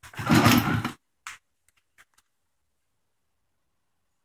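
A noisy rustle of about a second, most likely the phone being handled as it is moved, then a short knock and two faint clicks, then silence.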